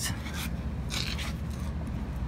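Rubbing and scraping handling noise, with a few short scuffs, as the phone is moved and the person crouches down. Underneath is a steady low rumble.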